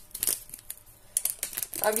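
A few soft, scattered clicks and rustles from spice containers being handled in the kitchen, then a word of speech near the end.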